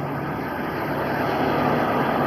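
Passing road traffic: a steady rush of tyre and engine noise from a van going by on the street, building slightly in loudness.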